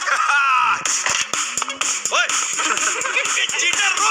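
A man laughing over upbeat music with frequent sharp percussive hits.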